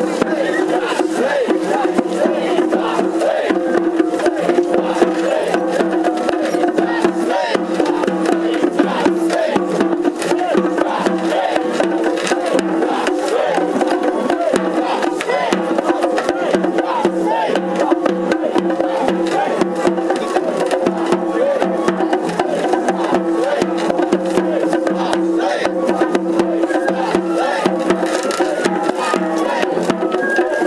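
Japanese festival float music (ohayashi) played live: quick, continuous drum and clacking percussion strokes over a steady held pitch, with the voices of the surrounding crowd.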